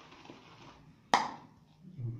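Shaving brush swishing through lather in a shaving bowl, the lather still too stiff, then a single sharp knock about a second in with a short ringing tail.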